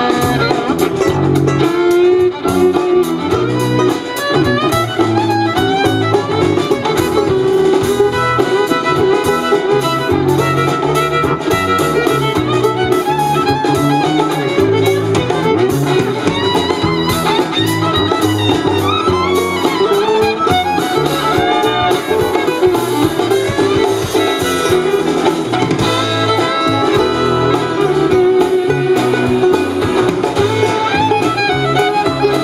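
Live acoustic string band playing an instrumental break, with the fiddle to the fore over acoustic guitar, banjo, upright bass and drum kit.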